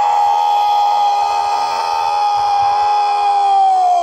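A parade commander's long drawn-out shouted drill command, held loud on one pitch for about four seconds and falling away at the end, ordering the guard of honour to present arms.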